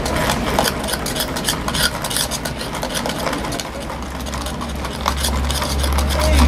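Ice cubes clinking and rattling against a plastic cup as an iced coffee is stirred with a straw, in quick repeated clicks. A low rumble swells near the end.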